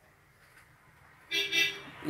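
Near silence, then a person's drawn-out voice begins about a second and a half in.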